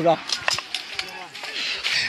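A short shout, then a lull in the gunfire filled with faint, scattered sharp clicks and metallic clinks.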